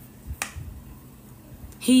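A single sharp click about half a second in, over a low background rumble; a woman starts speaking just before the end.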